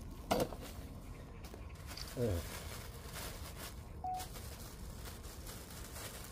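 Black plastic mulch film crinkling faintly as a gloved hand works it around a corn seedling. There is a sharp tap just after the start and a brief voice about two seconds in.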